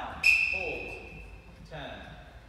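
A sudden high-pitched ringing tone, like a ding, that fades away over about a second, with brief voices around it.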